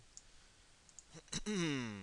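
A few computer mouse clicks, faint at first, then one sharp click a little past halfway. Right after it comes a short wordless vocal sound that falls in pitch.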